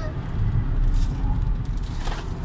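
Car being driven, heard from inside the cabin: a steady low rumble of engine and road noise, a little louder in the first second.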